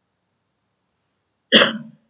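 A single short cough from a woman about one and a half seconds in, after dead silence.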